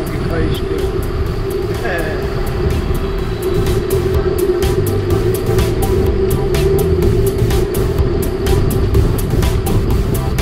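Background music: a sustained steady tone over a shifting bass line.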